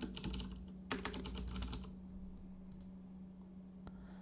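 Typing on a computer keyboard: two quick runs of keystrokes in the first two seconds, then a single click near the end, over a faint steady hum.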